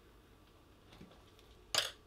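Quiet room with a faint tick about a second in and one short, sharp clink near the end, as painting gear is handled.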